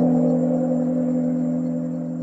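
A large struck Buddhist bell ringing on after a single strike: a low, steady, humming tone that slowly fades.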